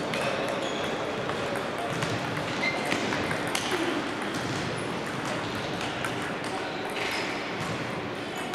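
Table tennis balls clicking repeatedly against paddles and tabletops during rallies, over a steady background of voices.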